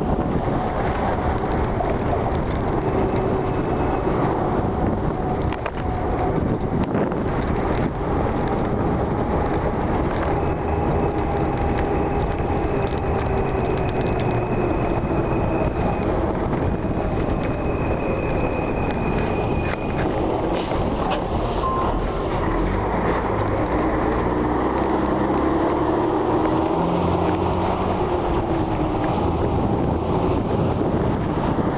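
A coach bus heard from inside the cabin while it drives: a steady engine drone and road rumble. A few faint held tones in the engine note slowly rise and fall.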